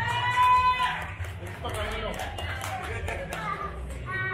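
Scattered applause from a small crowd, with a drawn-out shout in the first second and voices around it.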